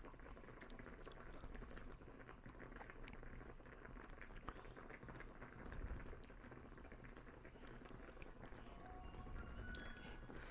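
Faint, steady simmer of chicken mizutaki broth in a ceramic pot on a tabletop gas burner: a low even hiss with small scattered ticks, and one brief click about four seconds in.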